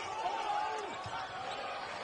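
Steady arena crowd noise during a basketball game in play, with faint court sounds such as the ball bouncing.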